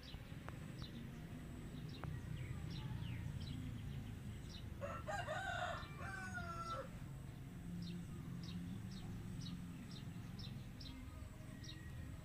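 A rooster crows once, about five seconds in, in one call lasting about two seconds. Short high chirps repeat throughout over a low background rumble.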